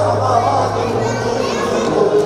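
Loud music with a held low bass note, which drops out near the end, mixed with many people talking and calling out.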